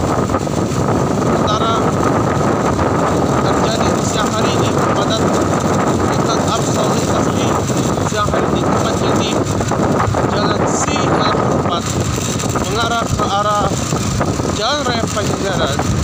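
A motorcycle riding along a road in traffic, heard from the rider's seat: a steady rush of wind on the microphone over engine and road noise. A few short warbling pitched sounds come in near the end.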